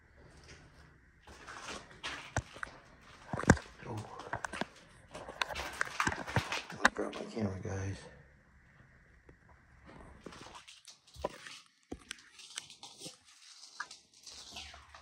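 Footsteps on debris-covered concrete stairs: gritty scuffs and crunches with several sharp knocks, busiest in the first half, then a few sparse taps near the end.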